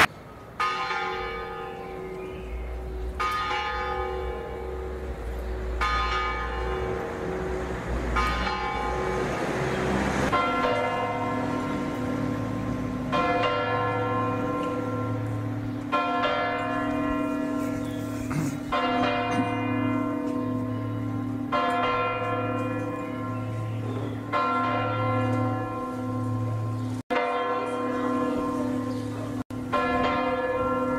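Tarragona Cathedral's bells tolling in separate slow strokes, about one every two and a half seconds, each left to ring out. About ten seconds in, a deeper bell joins with a humming tone under the strokes.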